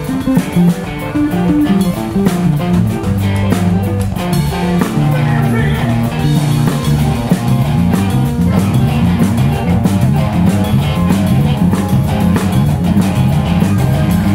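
A rock band playing live and loud: electric guitars over bass and a drum kit, keeping a steady rhythm.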